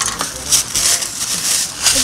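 Pink gift-wrap paper being torn and crumpled open by hand, in a run of crinkling, rustling bursts.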